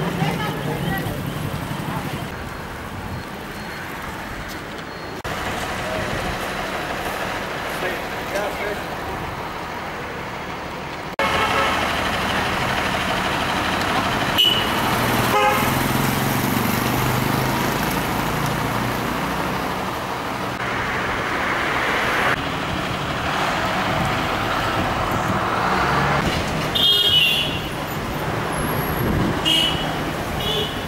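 Busy city street traffic: engines and tyres passing steadily, with a few short vehicle horn toots, the clearest near the end. The sound shifts abruptly at several edits.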